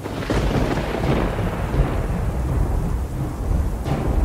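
Thunder with rain: a clap that breaks at the start and rolls away over about two seconds, leaving a low rumble under a steady hiss of rain.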